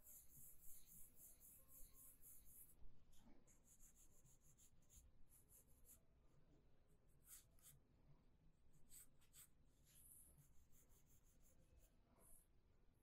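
Faint scratching of a pencil drawing lines on paper: a quick run of back-and-forth strokes for the first three seconds, then shorter strokes in scattered groups.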